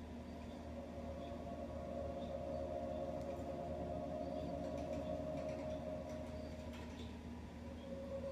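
Ghost-box software (Ethereal Spirit Box) playing through laptop speakers: a quiet, steady droning hum with a few held tones and faint ticks, no clear words.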